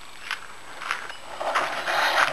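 Footsteps scuffing over dry grass, with rustling that grows louder about a second and a half in.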